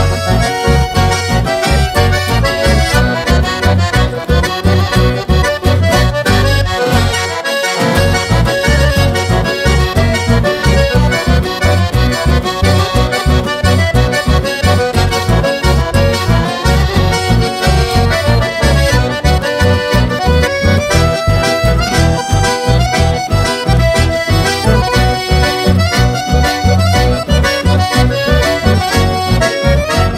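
Chamamé played by a band led by two button accordions over strummed guitars and a steady bass beat, in an instrumental passage with no singing. The bass drops out briefly about seven seconds in.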